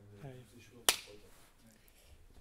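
A single sharp clap about a second in, made as a sync marker at the start of the recording. A faint voice is heard just before it.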